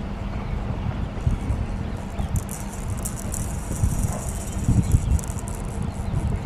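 Wind buffeting an outdoor microphone, an uneven low rumble with gusts, over a faint steady hum. A high rattling hiss comes in about two seconds in and fades out near the end.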